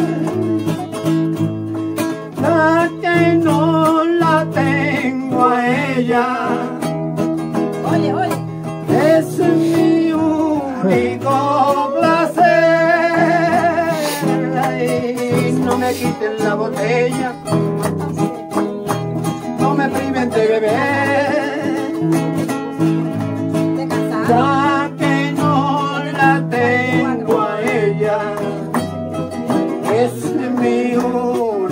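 Two nylon-string acoustic guitars playing together: strummed chords underneath with a picked melody line moving over them, as an instrumental passage between sung verses.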